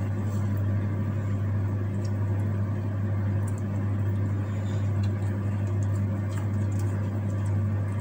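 A steady low hum at an even level, with faint, scattered small ticks and rustles of hands handling leaves and food.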